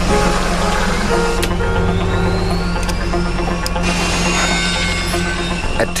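Loud airliner engine noise that starts suddenly, with a thin whine rising steadily in pitch, over background music.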